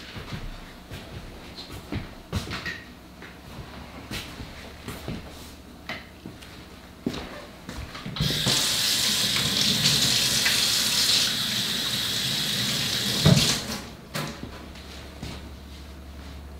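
Kitchen tap running steadily for about five seconds, starting about eight seconds in and stopping with a sharp knock. Before it, scattered light clicks and knocks of handling at the counter.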